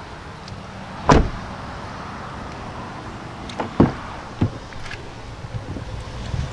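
Rear door of a Hyundai Santa Fe being opened and handled: a sharp clunk about a second in, another clunk a little before four seconds, then a lighter knock. Under them is a steady background noise.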